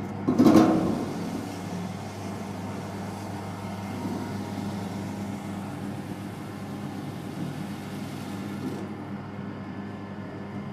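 Small electric sugarcane juicer running, its steel rollers crushing cane stalks fed into it: a steady motor hum under a rough grinding noise, with a loud crunch about half a second in. Near the end the grinding thins out while the motor hum continues.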